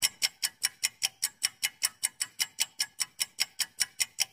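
Countdown-timer sound effect: a clock ticking evenly, about five ticks a second.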